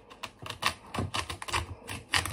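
A serrated knife sawing through a raw fennel bulb on a plastic cutting board, giving a quick, irregular run of crisp clicks and crunches, about five a second.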